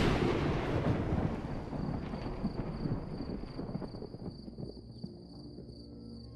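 A deep booming hit that dies away in a long rumble over several seconds. From about two seconds in a steady high chirring of crickets is heard, and soft sustained music notes come in near the end.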